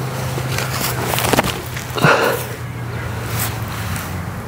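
A disc golf drive thrown in an open field, heard over steady outdoor noise with a low hum: short rustling sounds of the run-up about a second in, then a louder brief burst about two seconds in at the throw.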